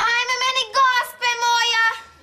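A girl's high voice singing three held notes in a row, with short breaks between them.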